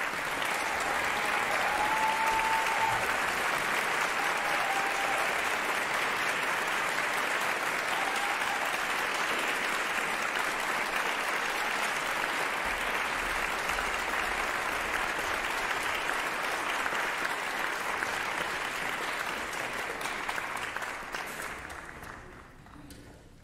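Concert-hall audience applauding steadily, dying away over the last couple of seconds.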